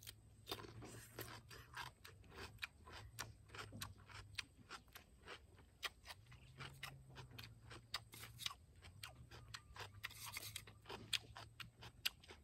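Raw cucumber being bitten and chewed: faint, crunchy crackles that come quickly and irregularly throughout.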